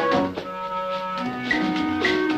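Latin dance-band music: the loud brass passage breaks off at the start, leaving quieter held accordion chords. Sharp percussion accents come back about one and a half seconds in.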